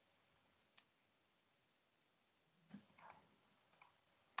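Near silence, broken by a few faint, short clicks: one about a second in, a small cluster near three seconds, and two more just before the end.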